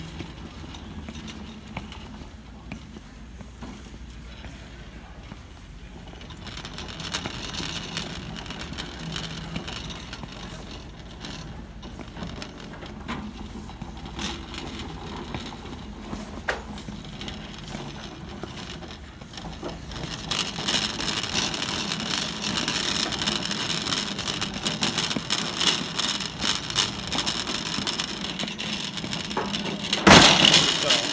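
Wire shopping cart rattling as it is pushed across a hard store floor, with footsteps alongside; the rattle gets louder and brighter about two-thirds of the way through.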